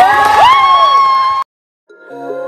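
Several high voices shouting and cheering excitedly at a basketball game, overlapping. The cheering cuts off abruptly about one and a half seconds in, leaving a brief silence.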